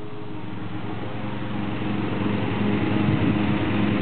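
An engine running steadily in the background, with a constant pitch, growing gradually louder over the few seconds.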